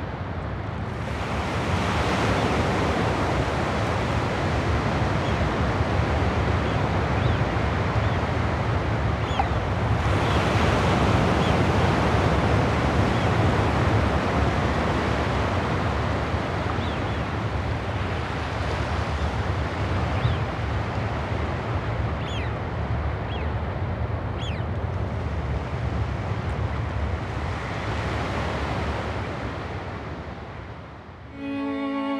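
Waves and surf washing on a shore, a steady rushing noise that swells and eases, with a few faint, short, high bird calls here and there.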